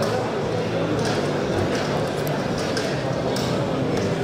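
Indistinct chatter of a crowd of spectators in a large indoor hall: a steady babble of many overlapping voices, with a few faint light clicks.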